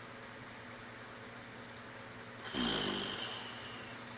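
A man's drawn-out wordless vocal sound, like a groan or mock snore, falling in pitch. It comes about two and a half seconds in and lasts about a second.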